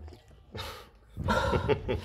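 A mother dog licking and nuzzling at a newborn puppy and its birth sac just after whelping: a short wet, noisy burst about half a second in, then a longer, louder one from just after a second in.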